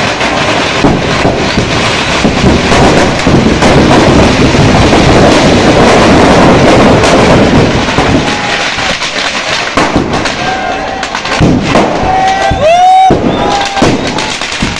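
Firecrackers packed in a burning Ravan effigy going off in a dense, continuous run of crackles and bangs, with a cheering crowd underneath. The bursts are thickest through the middle and ease off a little near the end.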